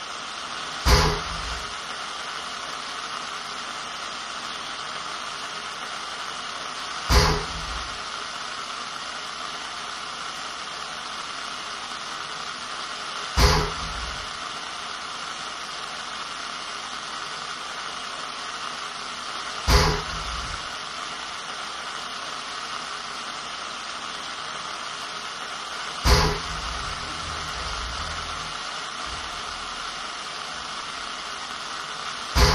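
A steady hiss like television static, broken by a deep boom about every six seconds, five in all.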